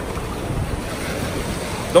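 Ocean surf washing steadily around a wader in shallow sea water, with wind buffeting the microphone.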